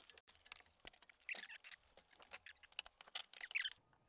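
A mountain bike being handled and loaded into a van: faint, irregular light clicks and rattles, with a couple of brief squeaks.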